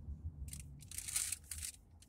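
Low rumble of a car's cabin on the road, with a short run of crackly rustling noises close to the microphone about half a second to a second and a half in.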